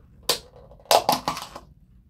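Crinkling plastic as the lid is pulled off a disposable cup: one short crackle, then a louder run of crackles about a second in.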